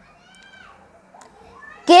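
Mostly quiet, with a faint, short voice sound about half a second in. Near the end a child's voice starts loudly singing the next line of an alphabet chant, 'K for kite'.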